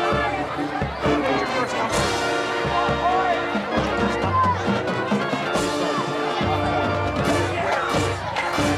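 High school marching band playing its field show: sustained brass chords over drum hits, with a low bass note coming in about four seconds in. Voices from the crowd in the stands chatter close by.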